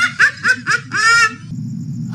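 A woman laughing: a quick run of short high bursts, about four a second, closing with one longer laugh that stops about a second and a half in.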